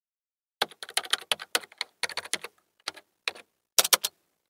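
Computer keyboard typing sound effect: a quick, irregular run of key clicks starting about half a second in, several a second, broken by short pauses.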